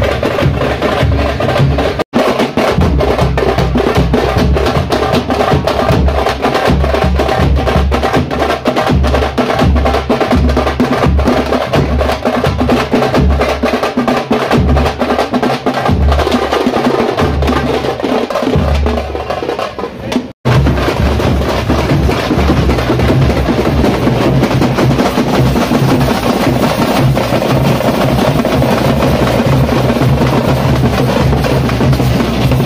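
Loud, fast drumming by a street procession's drum band: a dense run of sharp stick strikes over repeated deep drum beats. It cuts out for an instant twice, about two seconds in and again about twenty seconds in.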